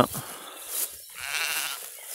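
Sheep bleating: a loud bleat breaks off right at the start, followed by fainter, higher bleats about half a second and a second and a half in.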